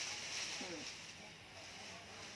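A thin clear plastic bag crinkling and rustling as it is handled and pulled about, with a few brief vocal sounds over it.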